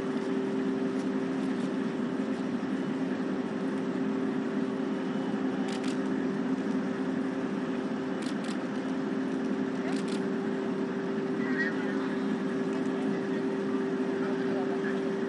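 A steady low hum with two constant tones over a background noise, crossed by a few short sharp clicks about six, eight and ten seconds in.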